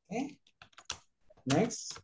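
Typing on a computer keyboard: a quick run of separate key clicks from about half a second in, with short bits of speech around it.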